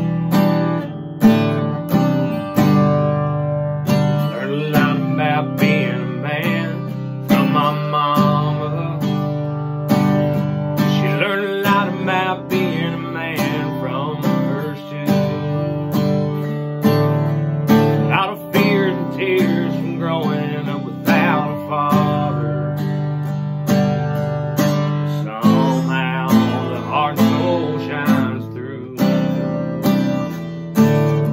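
Acoustic guitar strummed in a steady rhythm, with a man singing over it in phrases of a few seconds from about four seconds in.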